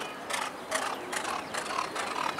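Hoofbeats of a galloping racehorse on a dirt track, a regular beat about two and a half times a second.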